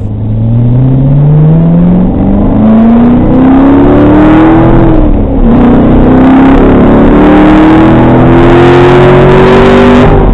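Chevrolet Corvette C7 Stingray's 6.2-litre V8, heard from inside the cabin, accelerating hard. The revs climb, drop at an upshift about halfway through, climb again and drop at a second shift at the very end.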